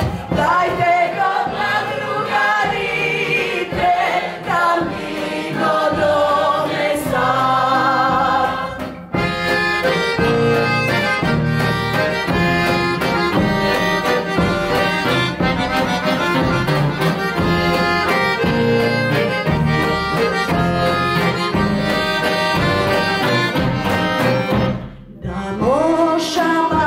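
A Macedonian folk song: a woman's lead voice sings with a wide vibrato over instrumental backing for about nine seconds, then the voice drops out for a long instrumental interlude, and the singing comes back right at the end.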